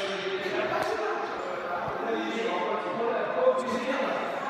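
Indistinct chatter of several people echoing in a gym hall, with a few light knocks and thuds mixed in.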